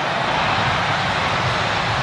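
Steady noise of a large stadium crowd during open play, an even wash of sound with no single event standing out.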